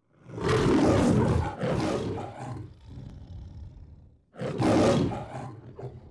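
The lion of the MGM studio logo roaring twice. The first roar is long and dies away into a lower rumble, and the second starts about four seconds in.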